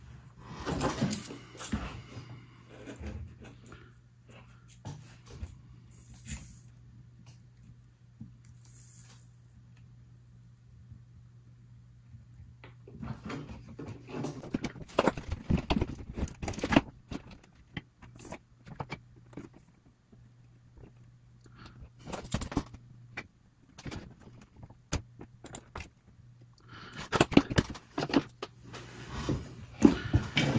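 Light clicks, taps and rustles of hand tools, wire and a small wire-mesh strainer being handled on a workbench while soldering, over a steady low hum. There is a quiet stretch about a third of the way in and a denser flurry of handling near the end.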